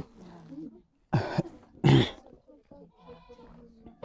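A man coughing twice, two short harsh coughs about a second apart.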